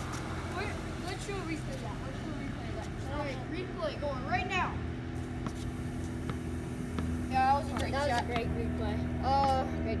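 Boys' voices talking and calling out in short bursts over a steady low hum.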